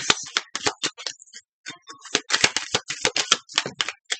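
A deck of large cards being shuffled by hand: a quick, irregular run of card clicks and flutters, with a brief pause about a second and a half in.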